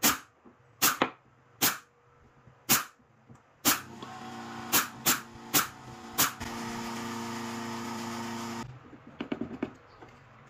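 A brad nailer fires nine times into stacked plywood pieces, about one shot a second, the last few coming quicker. A steady motor hum builds up partway through and cuts off suddenly near the end, followed by light clatter of the wooden parts being handled.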